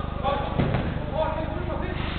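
A football kicked on artificial turf: a couple of sharp knocks a little over half a second in. Players' distant calls sound across the large indoor hall over a steady low hum.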